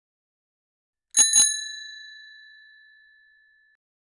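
A bicycle bell rung twice in quick succession about a second in, its ring fading away over the next two seconds.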